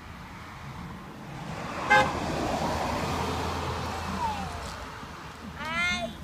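A passing vehicle gives one short, sharp horn toot about two seconds in, its engine and road noise swelling and fading as it goes by.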